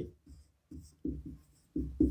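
Marker pen writing on a whiteboard: a few short, separate strokes.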